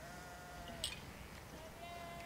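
Faint sheep bleating twice, each call steady in pitch and under a second long, over a quiet low outdoor rumble.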